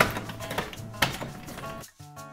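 Light background music with a few sharp clicks, the controls of a built-in electric oven being turned to switch it on: one right at the start, one about half a second in and one about a second in.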